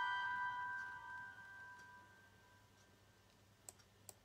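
The last held chord of a pipe organ piece, played on the Grönlund organ, dying away over about two seconds. Then low room tone, with a single faint click near the end.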